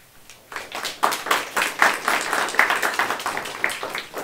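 Audience applauding. The clapping breaks out about half a second in and begins to die away near the end.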